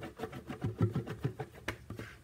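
Plastic mixing pitcher being handled on a stainless steel work surface: a quick run of low plastic knocks and clatter, with one sharper click near the end.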